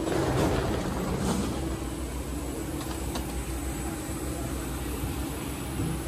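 Steady rushing drone with a low hum from a parked airliner and its ground equipment, heard at the aircraft's boarding door, with a few faint knocks.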